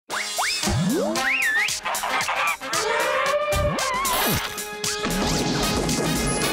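Cartoon-style intro jingle: music packed with quick swooping whistle glides, up and down, boings and short hits.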